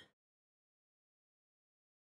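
Silence: the sound track is blank, with nothing audible.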